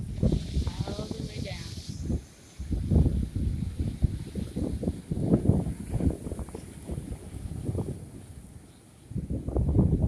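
Wind buffeting the microphone in repeated low gusts, over waves washing against a rock jetty.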